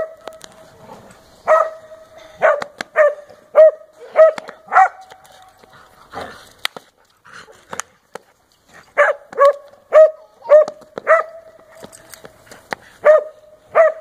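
Small dog barking in quick runs of sharp, high yaps, about two a second: several just after the start, a second run about nine seconds in, and two more near the end.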